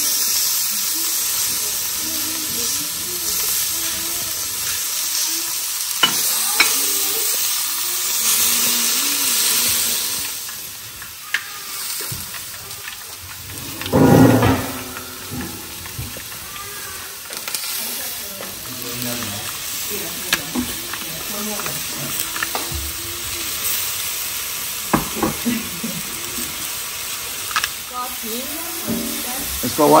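Halved grape tomatoes and sliced mushrooms sizzling in a hot cast-iron skillet. The sizzle is loudest over the first few seconds as the tomatoes go into the pan, then eases about a third of the way in. Sharp clicks are scattered through the rest, and a brief louder sound comes about halfway through.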